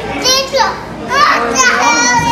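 A toddler's voice: three short, high-pitched babbling calls, the first falling in pitch and the last held.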